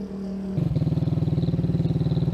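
A steady engine hum gives way, about half a second in, to a motorcycle engine running at low speed with a quick, even beat as the bike rides up.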